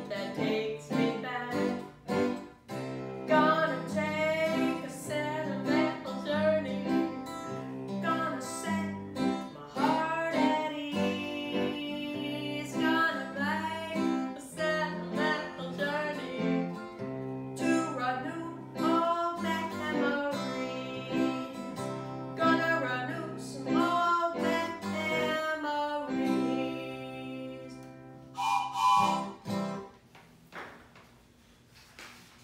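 Live acoustic guitar accompanying a woman singing a song, the guitar strummed under a wavering sung melody. The song ends with a strong held final note near the end, then stops.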